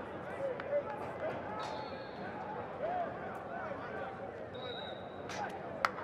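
Background chatter of voices at an outdoor football practice, with a few sharp smacks of footballs being thrown and caught; the loudest smack comes near the end.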